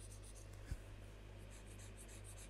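Faint, rapid scratching of a stylus hatching strokes on a graphics tablet, over a steady low electrical hum. A soft low thump comes about three-quarters of a second in.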